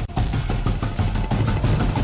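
Loud, dense, bass-heavy promo soundtrack: a low rumble with quick repeated hits, after a brief dip right at the start.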